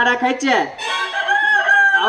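Rooster-like crowing: a short falling slide, then one long high call held for about a second.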